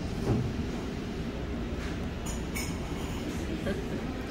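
Steady low rumble of restaurant background noise, with a brief knock just after the start and faint clinks about halfway through.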